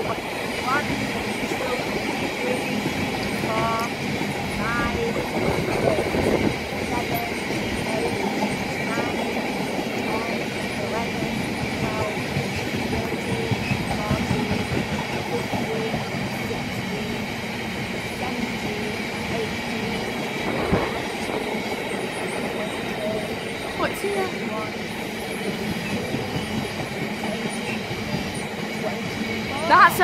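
Drax biomass hopper wagons rolling past in a long freight train, their wheels running on the rails in a steady, unbroken rumble with a thin steady high ring over it.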